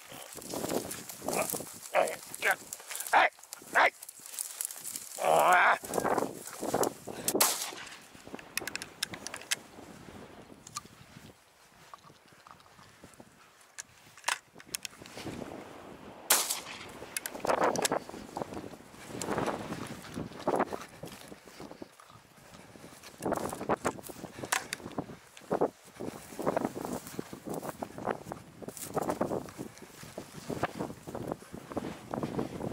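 Brush crackling and rustling as the gorse scrub is pushed through, with a dog's calls among it; the longest, a bending yelp or bay, comes about five to seven seconds in.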